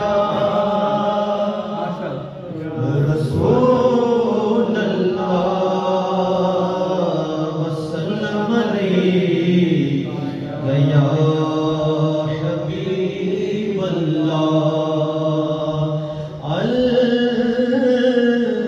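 Devotional vocal chanting: a voice sings long, sliding melodic phrases, each lasting a few seconds with short breaks between them, and there are no drums.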